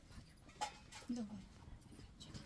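A short, quiet spoken "OK" about a second in, with a couple of faint clicks in low room noise.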